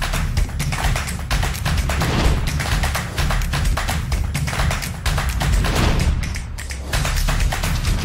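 Background music with a fast percussive beat and strong bass.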